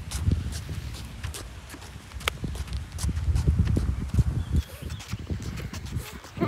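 Footsteps on a concrete footpath, a series of irregular sharp taps, over a low rumble of wind and handling on the phone's microphone.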